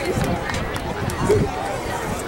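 Chatter of several people talking at once, with a few low thumps underneath.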